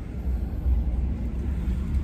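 Steady low rumble of a truck in motion heard from inside the cab, engine and road noise with no distinct events.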